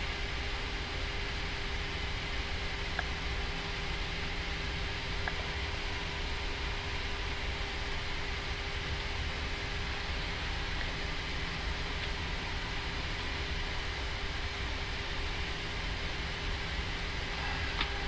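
Steady flight-deck noise of an Airbus A340-300 taxiing slowly: an even rush of cockpit ventilation over a low rumble, with a constant faint hum.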